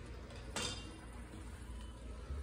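Quiet low hum of a small tiled room with one short sharp click about half a second in.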